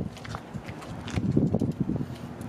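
Footsteps on concrete, an uneven run of soft low steps as someone walks up to the car.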